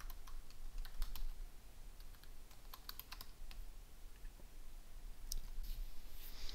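Keys tapped on a computer keyboard in short irregular runs for about three and a half seconds, then a lone click near the end, over a faint low hum.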